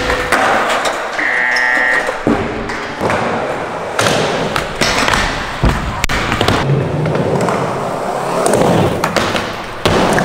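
Skateboarding on wooden ramps: wheels rolling, a board sliding on a metal rail, and several sharp clacks and thuds as the board lands and slaps the floor after a bail, echoing in a large hall.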